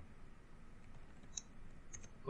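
A few faint clicks of computer keyboard keys over a low room hiss, as arrow keys step the cursor back along a line of text.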